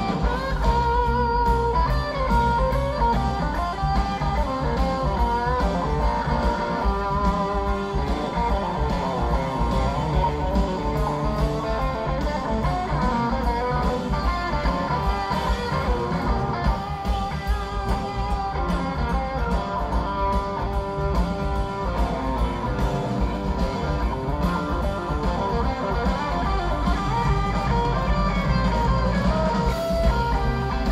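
Live rock band playing, with guitars out front over bass and drums, heard through an audience recording from the crowd.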